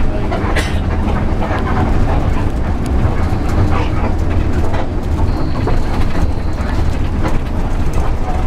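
A bus on the move, heard from inside the cabin: a steady low engine rumble with frequent rattles and clicks from the body and fittings.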